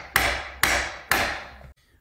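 Three hard hammer blows about half a second apart, each with a short ringing tail that dies away.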